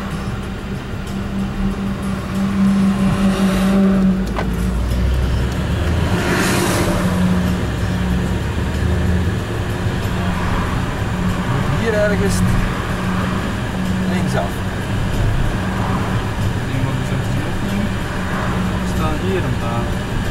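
Car engine and road noise heard from inside the moving car's cabin: a steady low hum and rumble, with a short louder rush of noise about six seconds in.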